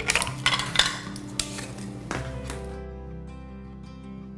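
A few sharp knocks and clinks as plastic drain-trap fittings and the metal lid of a pipe-cement can are handled, over steady background music. The clatter stops about two-thirds of the way in, leaving only the music.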